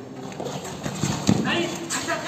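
Kabaddi players scuffling on foam mats during a tackle: a quick run of thumps and footfalls about a second in, with players' voices shouting near the end.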